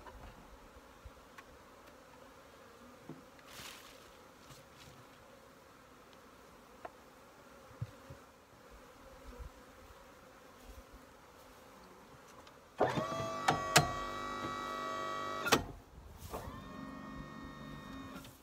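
Honeybees buzzing around open hives. About two-thirds of the way through, an electric hoist motor runs with a steady whine for nearly three seconds. A fainter run of the motor follows near the end.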